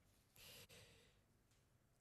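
Near silence with one faint breath from a man about half a second in.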